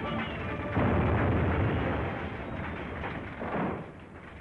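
A loud explosion about a second in, a fire grenade going off to start a blaze, fading away over the next two seconds, with a smaller burst near the end. Film score music plays underneath.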